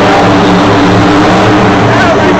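Monster truck's supercharged V8 engine running steadily, a loud even drone echoing in a packed stadium.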